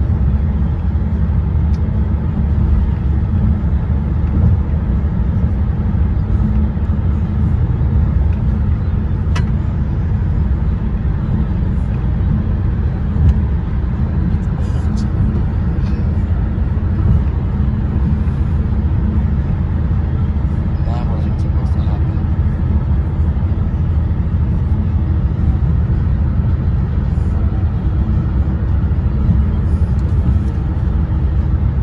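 Steady road and engine rumble of a moving car, heard from inside the cabin.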